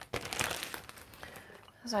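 Zip-top plastic bag crinkling as it is handled, dying away after about a second.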